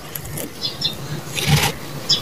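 Dry sand crumbling through the fingers and pouring back into a plastic tub in an irregular gritty stream, with a louder pour about one and a half seconds in.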